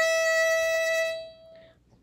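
A violin's open E string bowed as one long, steady note, fading out about a second and a half in.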